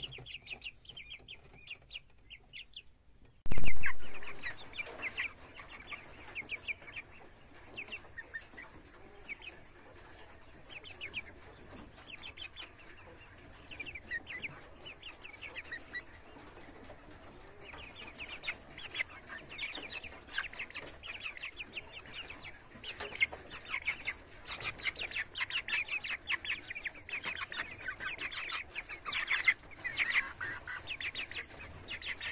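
Young Cochin chickens peeping and clucking, a dense run of short high calls that grows busier in the second half. A single loud thump about three and a half seconds in.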